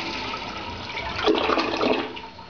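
Old Mueller toilet on a flushometer flushing: water rushes down the drain, with a louder surge in the second second, then falls off sharply near the end as the bowl empties.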